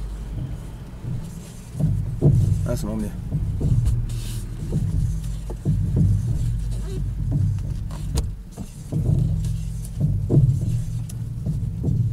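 Car running on the road, heard from inside the cabin, with repeated short knocks as the steering wheel is turned left and right: a suspension or steering noise whose cause is not given.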